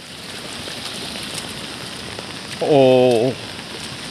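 Steady heavy rain falling. A man's drawn-out "oh" comes about two and a half seconds in.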